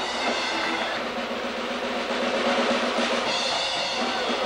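Live circus band drum roll on snare drum under a wire-walker's trick, with steady organ notes coming back in about three seconds in.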